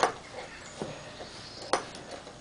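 A few light metallic clicks from an Allen key working in the cap screw of an aluminium clamp, with one sharper click near the end.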